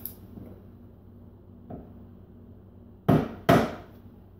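Two sharp knocks on wood about half a second apart, after a faint tap about a second and a half in: a hand rapping on the wooden cleat under a kitchen cabinet.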